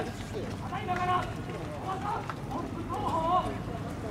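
Speech only: a person's voice talking steadily, over low outdoor background noise.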